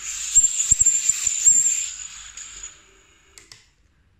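Brushless motors of an armed FPV quadcopter, props removed, whining at high pitch and surging up and down in short bursts as the quad is moved by hand, with a few low knocks. This is the flight controller speeding the motors to hold its attitude against the outside force, which is normal behaviour; the whine fades out about two and a half seconds in.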